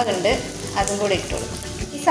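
Chopped onions, garlic and green chillies sizzling in hot oil in a pot: a steady frying hiss.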